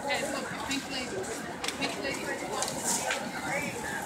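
Voices of nearby people talking over the steady background noise of a busy city street.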